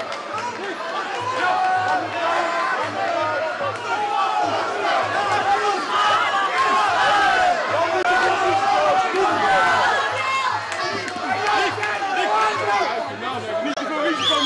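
Fight crowd shouting and yelling, many voices overlapping in a continuous din.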